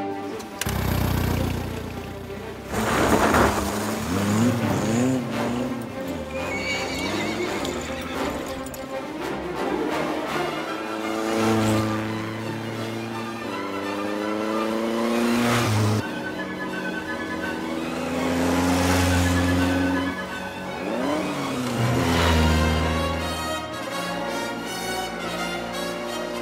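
Orchestral film score playing sustained chords, with a horse whinnying over it.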